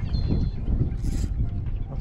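Wind buffeting the microphone in a steady low rumble, with a short high chirp just after the start and a brief high hiss about a second in.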